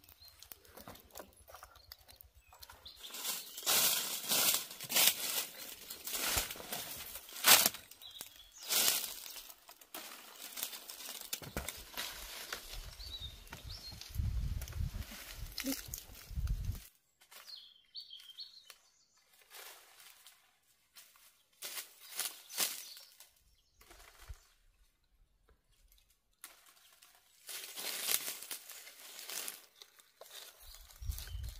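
Dry fallen leaves rustling and crackling in irregular bursts, as from footsteps and movement on a leaf-covered ground, busiest in the first third, with a low rumble for a few seconds around the middle.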